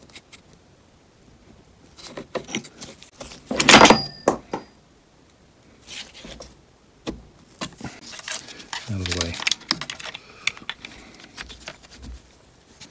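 Plastic and metal clicks and scrapes of a car door lock actuator being levered and snapped back together with screwdrivers, with a louder metallic clatter about four seconds in.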